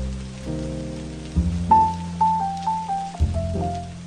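Jazz music over steady falling rain: low bass notes hold beneath, and a higher melody line of short stepping notes comes in about two seconds in.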